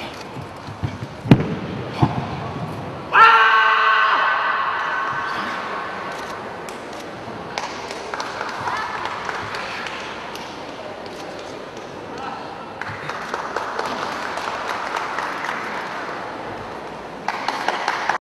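A few sharp thumps of feet stamping and landing on the competition carpet. About three seconds in comes a sudden loud ringing tone that fades over a couple of seconds. Then the hall's murmur of voices.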